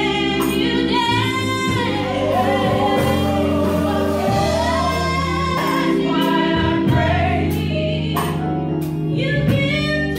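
Gospel choir singing with a woman singing lead, backed by a live band of Nord Electro stage keyboard, electric guitar and drum kit, with cymbals striking through the music.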